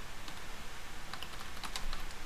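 Computer keyboard being typed on: a few key clicks, then a quick run of clicks in the second half as a word is typed.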